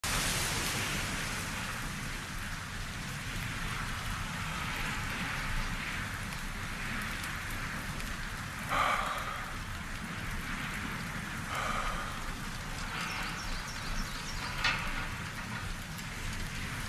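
Steady rain falling, a soft even hiss, with a few brief louder sounds over it partway through.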